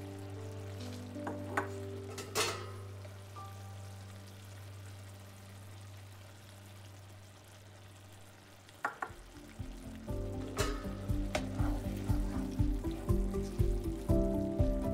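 Lemon pickle mixture sizzling in a hot pan, with a few sharp clicks. Background music plays throughout and picks up a steady beat about two-thirds of the way through.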